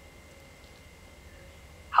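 Quiet room tone: a faint steady hum with a few faint thin steady tones above it. A voice starts a question right at the very end.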